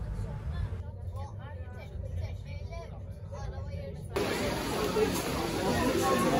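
Low rumble with faint voices in the distance. About four seconds in, an abrupt cut to the dense, overlapping chatter of a crowd.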